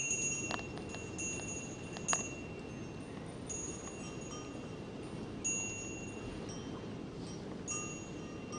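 Light chimes ringing on and off, thin high tones that sound for about a second and fade, returning every second or two, over a steady low background rumble. Two short sharp strikes come in the first few seconds.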